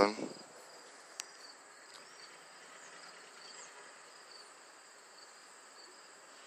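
Faint background noise with thin, steady high-pitched tones running through it, and one sharp click a little over a second in.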